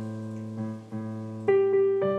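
Slow instrumental background piano music: held chords, with new notes struck every half second or so.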